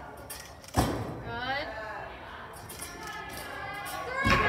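A gymnast's feet landing on a balance beam: one sharp thud about a second in, ringing in a large hall, with spectators' voices chattering softly around it.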